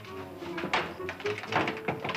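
A few sharp knocks and thuds, the loudest about three-quarters of a second in and again near the end, over soft music.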